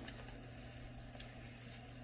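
Faint rustle and soft ticks of Bible pages being turned, over a steady low hum.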